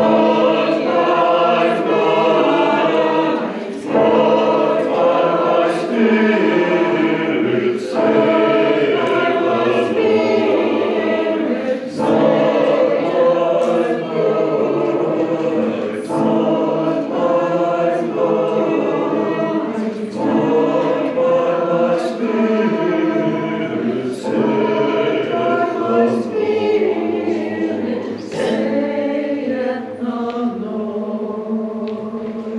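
Mixed church choir singing an anthem in parts, the voices moving in a slow, even pulse with a sharp accent about every two seconds.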